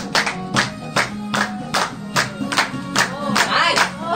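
Dance music with singing over a fast, steady beat, about five beats every two seconds.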